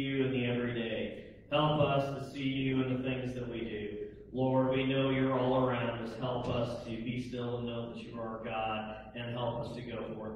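A man's voice praying aloud in long phrases, with an even, chant-like intonation.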